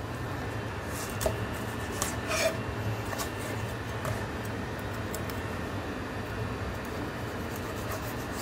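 Knife filleting a sea bass on a plastic cutting board: a few faint scrapes and taps around one to two and a half seconds in, over a steady low hum.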